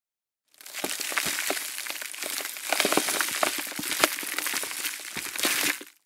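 Dense crackling and crunching noise, full of sharp cracks, that starts about half a second in and fades out just before the end: a crackling sound effect under a channel's logo intro.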